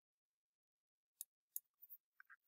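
Near silence, broken in the second half by two faint, short clicks and a few fainter ticks.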